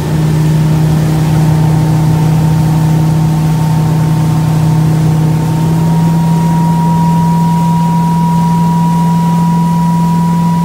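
Motorboat engine running steadily at towing speed, a constant hum with a thin higher whine that rises a little about halfway through, over the hiss of wind and churning wake water.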